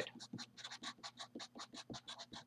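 Sharpie felt-tip marker scratching across paper while writing, in a quick run of short, faint strokes.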